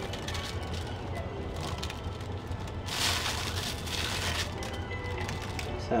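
Plastic bag crinkling and rustling as gloved hands scoop small cubes of black melt-and-pour soap out of it, the cubes dropping into a plastic jug of soap batter, over a low steady hum.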